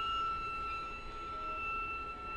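A single high note held softly and steadily on bowed strings of a string quartet, with no change in pitch.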